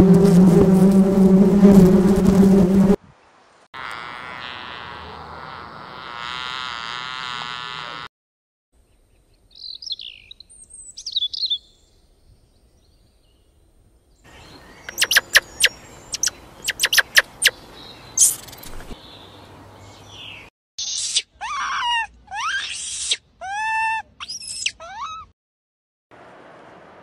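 A run of different animal sounds with short silences between them. It opens with a loud low call for about three seconds, then a honeybee swarm buzzing for about four seconds. Brief chirps follow, then a stretch of rapid clicks and chirps, and near the end several clear curved bird calls.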